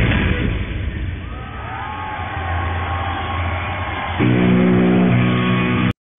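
Live rock music from an old concert recording, sounding muffled, with electric guitar notes that bend in pitch. About four seconds in, a louder held chord comes in, and the music cuts off abruptly just before the end.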